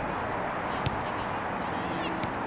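Steady outdoor noise at a soccer field, with one sharp knock about a second in and faint distant shouts near the end.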